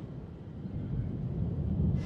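A low rumble that grows louder toward the end.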